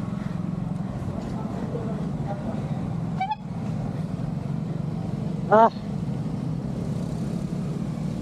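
Motorcycle and tricycle engines running steadily in slow traffic close by, a low even hum. A brief higher-pitched sound comes about three seconds in.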